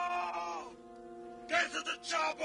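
Film soundtrack: a person's short wavering cry that falls in pitch, then a choppy, broken cry near the end, over a sustained music drone.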